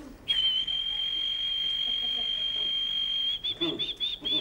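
A man's whistled canary impression through cupped hands: one long, high, steady whistle, then near the end it breaks into a run of quick repeated chirps.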